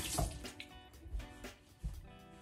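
Bathroom tap running and shut off about half a second in, over steady background music, with a few soft thuds.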